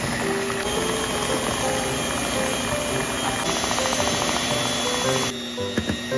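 Electric hand mixer running steadily, its twin beaters whipping eggs and sugar in a stainless steel bowl, under background music. The mixer noise drops shortly before the end.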